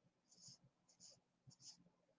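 Very faint scratching of drawing strokes on paper, three short strokes a little over half a second apart.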